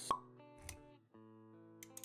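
Motion-graphics intro sound effects over a soft background music chord: a sharp pop just after the start, a short low thump around the middle, then held notes with quick clicks near the end.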